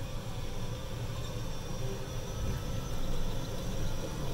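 Golf cart driving along a paved path, heard from the driver's seat: a steady low rumble of motor and tyres.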